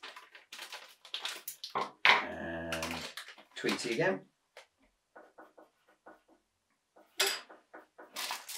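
Plastic foil blind bags crinkling and rustling as they are handled and torn open, in quick crackles over the first two seconds and a sharp burst near the end. Around two seconds in there is a louder, low pitched vocal sound lasting about a second, and a single word is spoken a little later.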